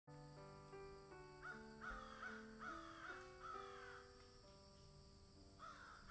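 Soft music of slow, held notes, with crows cawing in a quick run of about six calls starting about one and a half seconds in.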